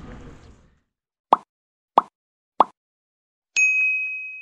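Three short, identical pops about two-thirds of a second apart, then near the end a bright ding that rings on: sound effects of an animated like-follow-comment end card.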